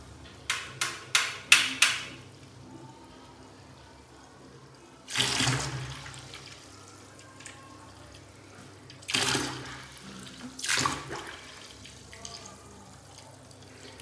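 Tap water running in a thin stream into a plastic bucket. About half a second in comes a quick run of four sharp clicks, and later there are three louder rushing surges of water noise, each about a second long.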